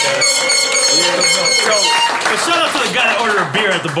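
Several men laughing and talking over one another, with one long, high-pitched held cry over the first two seconds.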